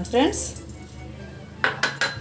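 A utensil knocking twice against an aluminium kadai near the end, with coriander seeds dry-roasting in the pan.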